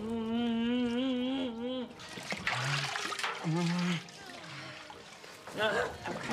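Water trickling and splashing in a metal washtub as a person is bathed. A long, wavering vocal wail fills the first two seconds, followed by a few short, low hums.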